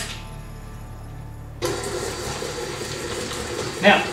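Electric tilt-head stand mixer switched on about a second and a half in, its motor running with a steady whir as it stirs dry sugar and cocoa in the bowl.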